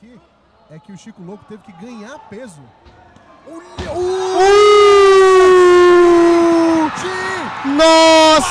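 Faint voices, then a thump about four seconds in, followed by a long, loud shout held for a couple of seconds and a second shout near the end: an excited yell at a flying-knee knockout in an MMA fight.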